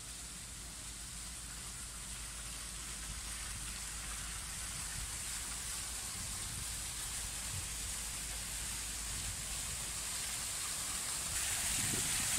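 Fountain water splashing, a steady rushing hiss that grows gradually louder, with a further rise near the end.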